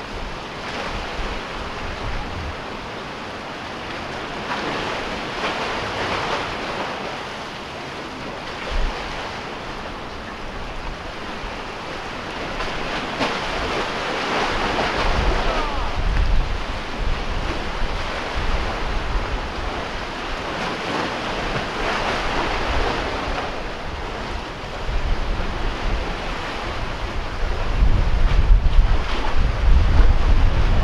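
Sea waves washing and splashing against concrete tetrapods, the surge swelling every several seconds. Wind buffets the microphone as a low rumble that grows stronger near the end.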